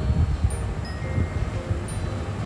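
A spatula stirring and scraping a snake gourd stir-fry in a cast-iron pan, an irregular low rumble of soft knocks and scrapes. A few faint, short, high chime-like tinkles sound over it.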